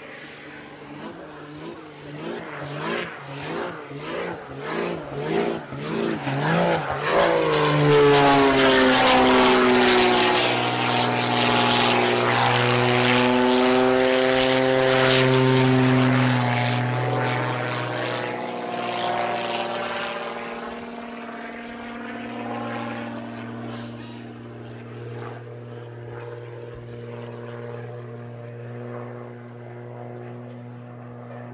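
Extra 330 aerobatic plane's piston engine and propeller in flight overhead. For the first seven seconds the sound swells and fades about one and a half times a second, then builds to its loudest as the plane passes from about eight to sixteen seconds in, and fades to a steadier, quieter drone as it moves away.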